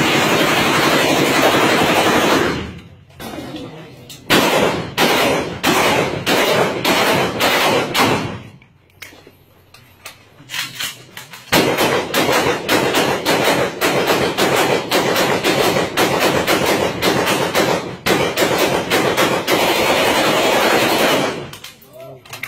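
Rifle gunfire: a sharp shot at the start, then fast runs of shots, a pause near the middle, and about ten seconds of near-continuous rapid fire in the second half.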